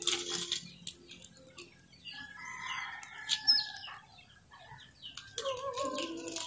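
A rooster crowing once, a call of about a second starting about two seconds in, with another pitched call beginning near the end.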